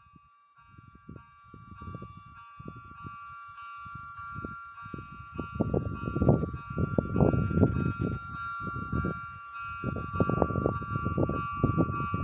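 Wind buffeting the microphone in irregular gusts that grow stronger, over a steady two-note high ringing tone and a fast, faint high ticking.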